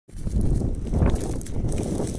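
Footsteps rustling through dry cereal stubble, over a low rumble on the phone's microphone.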